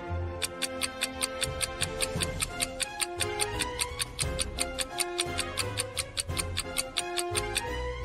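Stopwatch ticking sound effect counting down a thinking pause: fast, even ticks starting about half a second in and stopping shortly before the end, over soft background music.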